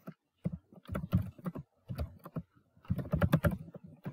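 Typing on a computer keyboard: short runs of rapid key clicks separated by brief pauses.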